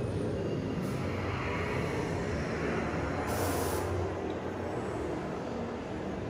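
Test Track ride vehicle rolling along its track, a steady rumble, with a short hiss about three seconds in.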